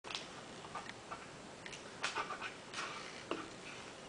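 Faint, scattered small clicks and taps, a few louder ones past the middle, from a toddler handling food and a plate on a plastic high-chair tray.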